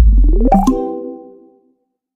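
Logo-animation sound sting: a deep bass boom, then a tone sweeping upward for about half a second into a sharp hit, and a chord that rings out and fades away.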